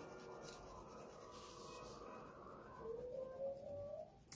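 Wax crayon rubbed back and forth on paper, colouring hard; faint. A faint rising tone comes in near the end.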